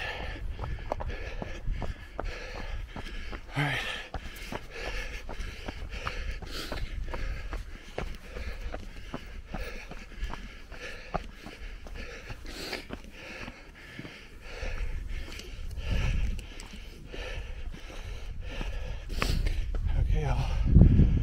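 Running footsteps on a dirt and rock trail, a steady series of short strikes, with the runner's breathing over a low rumble.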